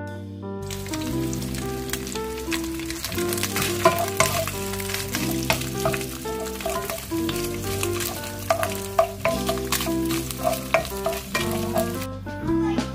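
Diced ham sizzling in oil in a nonstick frying pan, starting about half a second in. It is stirred with a wooden spoon that knocks and scrapes against the pan in frequent clicks. Background music plays underneath.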